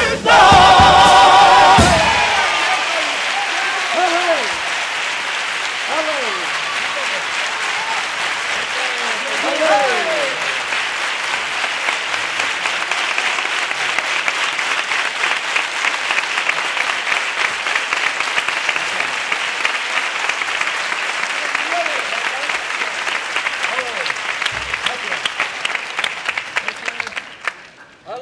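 A male carnival choir holds the final sung chord of its song for about two seconds. Then the audience applauds at length, with a few shouts rising over the clapping. The applause dies away near the end.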